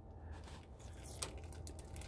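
A few faint, light clicks over a quiet background, a little over a second in and again near the end.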